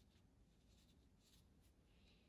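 Very faint strokes of a small round Princeton Snap size 2 brush drawing fine lines on watercolour paper: a few short, soft scratches, close to silence.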